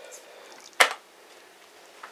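A single sharp click about a second in from a move in a blitz chess game, made by hand with wooden pieces and a chess clock at the board.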